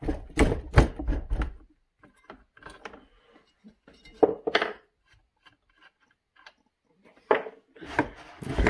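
Metal clicks, knocks and scrapes of a Homelite scrench working the spark plug out of an Echo CS-670 chainsaw's cylinder, with the plug handled and set down on a wooden bench. A quick run of knocks comes in the first second and a half, then scattered lighter clicks and a single tap near the end.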